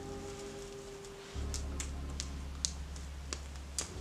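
Background music: held synth tones, with a deep bass coming in about a second in and a few sharp clicks scattered through.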